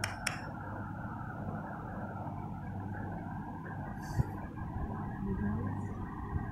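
Steady low background noise with a sharp click near the start and a short knock about four seconds in.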